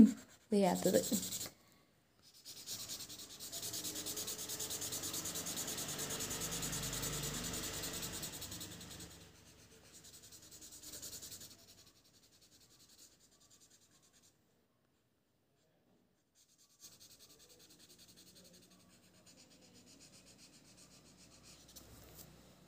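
A pen scratching across paper in quick, continuous strokes for several seconds. After that comes a shorter spell of writing, then near silence.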